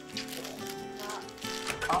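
Soft background music with held notes, with plastic shopping bags rustling faintly as groceries are taken out of them.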